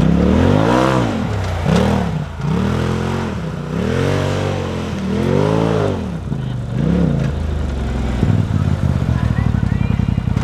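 Polaris RZR side-by-side's engine revving up and down about six times as it is driven in circles on dirt. Near the end it settles to a steadier, lower running sound as it pulls up close.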